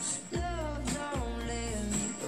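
A pop ballad playing: a woman's voice singing wavering, vibrato-laden notes over an instrumental backing with sustained deep bass notes.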